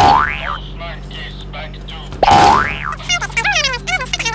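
Two identical cartoon "boing" sound effects about two seconds apart, each a held tone that springs up in pitch and drops back. Near the end they give way to fast, squeaky, high-pitched chattering.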